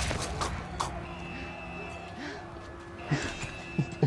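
Action-film soundtrack of a brutal fight, playing at moderate level: a few sharp hits in the first second, then a low sustained musical score with short voice-like grunts or cries over it.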